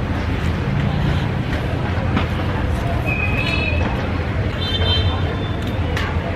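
Street traffic: a steady low engine rumble, with a few short horn toots around the middle.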